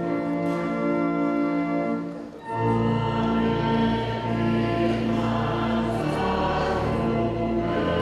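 A church congregation singing a hymn in held chords with sustained accompaniment. The sound dips briefly about two and a half seconds in, then the next phrase starts with a deeper bass.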